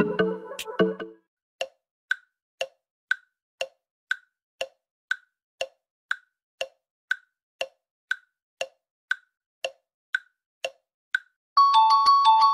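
Tick-tock countdown timer sound effect: short ticks about two a second, alternating lower and higher. Pop music cuts off about a second in, and a bright mallet-like chime starts just before the end.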